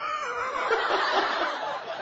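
A man laughing hard: loud, sustained, hearty laughter.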